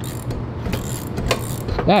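Ratchet wrench clicking in irregular strokes as it turns the crankshaft of a 196cc Honda-clone engine that had seized from rust. The piston is now coming free and turning through full revolutions.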